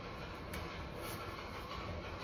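Steady, even background room noise, a low hiss and rumble with no distinct event, and one faint tick about half a second in.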